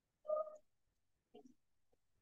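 A short, low murmured vocal sound from a person, a quarter second in, then a fainter brief one about a second later, with the audio otherwise cut to silence.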